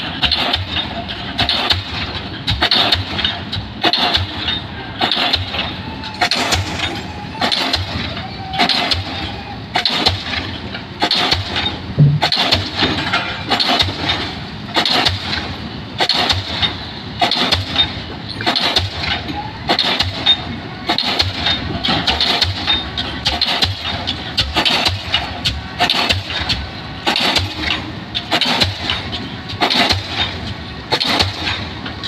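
Diesel pile hammer firing and striking a 600 mm precast concrete spun pile, a steady rhythm of heavy blows a little over one a second, each blow a sharp bang as the pile is driven.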